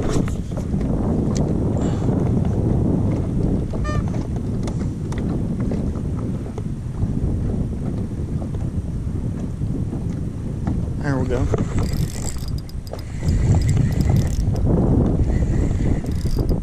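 Strong wind buffeting the microphone: a loud, unsteady low rumble that swells with a stronger gust near the end.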